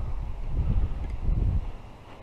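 Wind buffeting a GoPro action camera's microphone: a gusty low rumble that drops away near the end.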